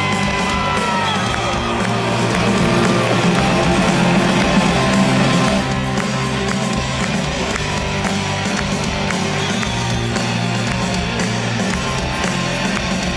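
A rock band playing live, with electric guitars and drums, in an instrumental passage between sung lines.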